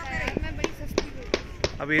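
A quick series of sharp knocks, about three a second, over background voices.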